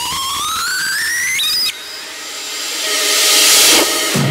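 Build-up in a drum and bass track: a synth tone rises steadily in pitch and cuts off suddenly a little under halfway through, then a noise sweep swells louder toward the drop.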